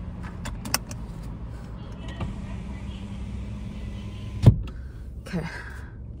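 Car running, heard from inside the cabin as a steady low hum, with a few light clicks in the first second. A sharp thump comes about four and a half seconds in and is the loudest sound.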